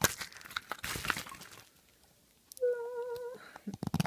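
Plastic gashapon capsules and their wrapping crinkling and crackling as they are handled for about the first second and a half. After a pause comes a short hummed note with a slight waver, then a few light clicks just before the end.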